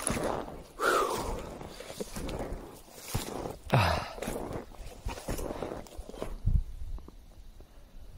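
Snowshoe footsteps crunching through deep snow in uneven steps, with a couple of audible breaths; the steps thin out near the end.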